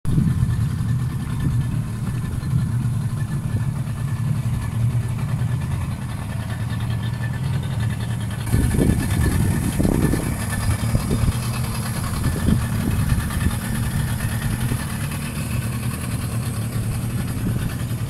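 A boat's motor running steadily, a low even drone, with a rushing hiss that gets stronger about halfway through.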